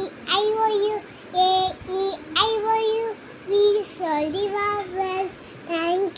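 A young girl singing a vowel song (A, E, I, O, U) unaccompanied, in a run of short held notes with brief breaks between them.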